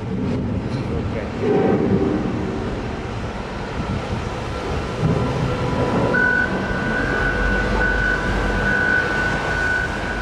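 Machinery running at a marble quarry: a steady low noise, joined about six seconds in by a steady high whine that holds to the end.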